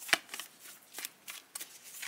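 A deck of tarot cards being shuffled by hand: a string of short, irregular card clicks.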